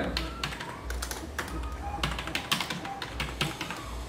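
Typing on a computer keyboard: a run of separate, irregular key clicks.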